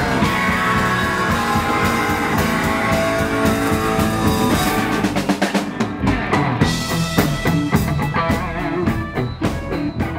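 Live rock band playing: electric guitar, bass guitar and drum kit. About halfway through, the steady groove gives way to a run of short, separate accented hits.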